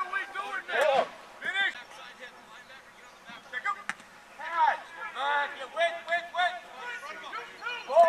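Shouting voices of coaches and players calling out during football drills, short rising-and-falling yells with no words that can be made out. There are sharp knocks about a second in and again about four seconds in.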